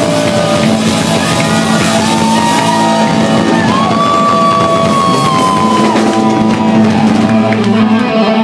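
Live rock band playing loud, with electric guitar holding long, slowly bending notes over sustained chords and cymbals, as at the close of a song.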